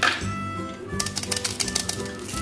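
Background music plays with a steady tune. From about a second in, the gold foil wrapper of a chocolate bar crinkles in quick sharp crackles as fingers press and work it, after a brief rustle at the start.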